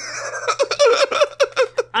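A person laughing in a quick run of short, evenly spaced bursts, about six a second.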